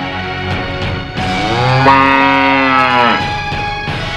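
A cow mooing once, one long call of about two seconds that starts about a second in, over background music.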